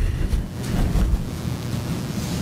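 Steady rumbling noise from a courtroom microphone, heavy in the low end, like wind on a mic.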